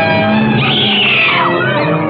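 Dramatic orchestral film background score holding sustained chords. About half a second in, a high sliding note falls in pitch over nearly a second.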